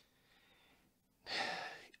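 A man's audible breath through the mouth, a short airy hiss lasting about half a second, starting just over a second in after a near-silent pause.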